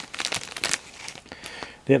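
Crinkling and rustling of trading cards and their plastic or paper wrapping being handled, a run of small irregular crackles.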